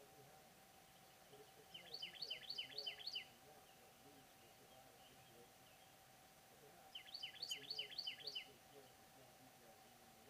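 A small songbird singing two quick phrases, each a run of about five or six repeated high, down-slurred notes, the second phrase coming about five seconds after the first.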